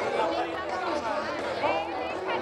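Crowd chatter: several people talking at once near the microphone, with no clear words, and little or no music heard.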